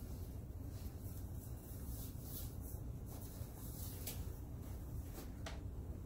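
Faint scattered rustling and light handling noises from gloved hands at a counter, over a low steady hum.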